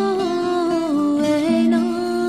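A woman's voice singing a Pamiri lullaby in Shughni: one long note that wavers and slides downward, then settles and holds near the end, over a steady instrumental accompaniment.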